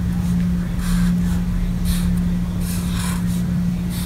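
A felt-tip marker scratching across notepad paper in several short strokes while writing. All of it sits over a loud, steady low hum.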